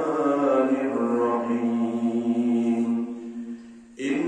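A man's voice reciting Arabic in a slow, melodic chant over a microphone, in the style of Quran recitation (tilawat), holding one long note through the second half that fades away just before the end.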